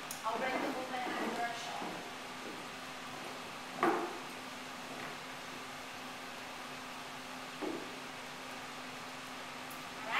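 A single sharp knock about four seconds in and a softer one near the end as a pole dancer in platform boots pushes off the wooden floor and lands from a swing around the pole, over a steady low room hum.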